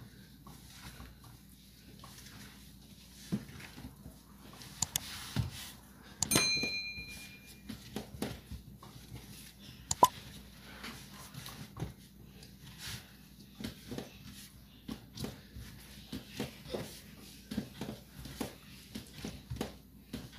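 Bread dough being kneaded by hand on a work surface: soft, irregular slaps and knocks, with a brief ringing clink about six seconds in.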